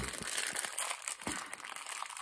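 Plastic toy packaging crinkling as it is handled, with a few small ticks.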